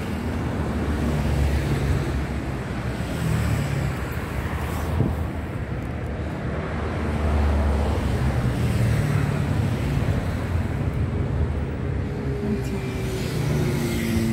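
Road traffic: a steady low rumble that swells and fades as vehicles pass.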